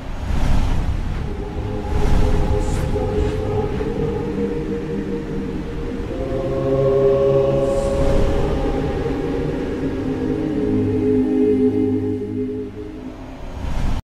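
Dark, atmospheric outro music: low sustained drone tones that swell and fade, with a heavy hit just after the start and another about two seconds in.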